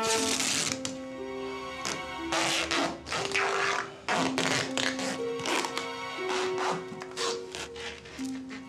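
Background music, a slow melody of long held notes, over repeated short rasping rips of duct tape being pulled off the roll as it is wrapped around a person.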